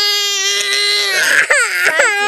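A one-year-old toddler crying hard: one long, steady-pitched wail, broken briefly about one and a half seconds in before a second cry starts.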